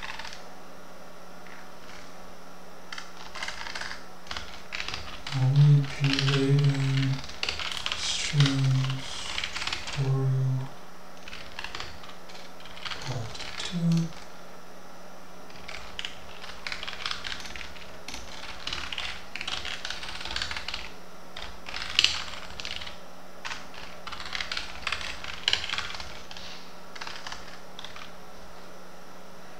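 Typing on a computer keyboard: irregular runs of key clicks as a line of text is entered. Between about 5 and 14 seconds in, a few short low vocal sounds from the typist stand out above the clicking.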